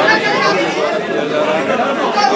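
A man speaking in Hindi, with chatter from the people around him.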